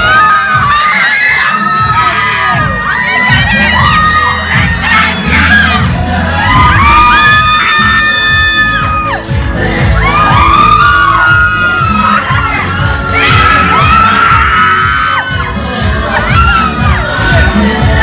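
Loud dance music with a heavy, pulsing bass beat, with a crowd of people shouting and cheering over it.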